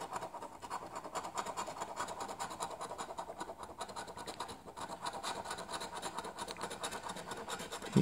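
A coin scraping the latex coating off a scratch-off lottery ticket in rapid, steady strokes.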